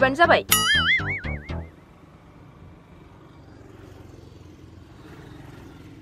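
Comic 'boing' sound effect: a wobbling, springy tone starts about half a second in and dies away by about two seconds, over short low pulses. After it there is only a faint background hush.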